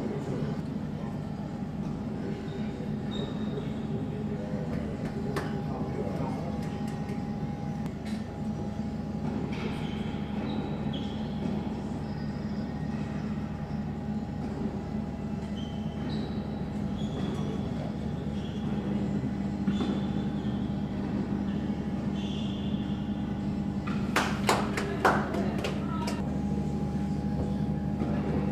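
Indoor tennis hall ambience: a steady low machine hum throughout, with a quick cluster of sharp tennis ball bounces and hits near the end.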